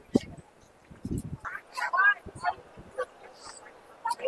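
Voices of passers-by talking nearby in short, scattered snatches, with two brief low thumps, one near the start and one about a second in.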